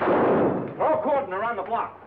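A gunshot at the start, echoing as it dies away, followed about a second in by a person's wavering, wordless cry.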